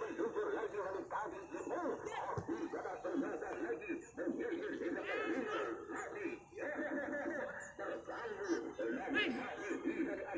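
Several people's voices close by, chattering and laughing over one another without a break.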